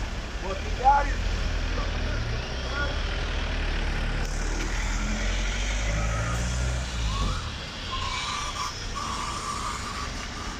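Slow, jammed town traffic on a wet street: car engines idling and creeping forward as a deep rumble that drops away about three-quarters of the way through, over a hiss of tyres on wet road, with brief voices. Near the end a high steady beeping tone sounds twice.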